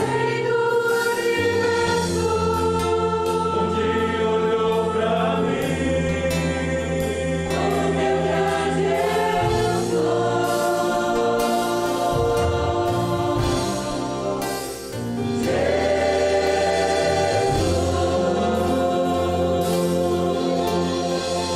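Voices singing the closing lines of a Portuguese-language hymn together, accompanied by drums, guitar, cello and keyboard. The singing pauses briefly about three quarters of the way through, then a new phrase begins.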